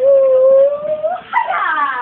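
A house cat yowling: one long drawn-out call that rises slightly, then falls away near the end.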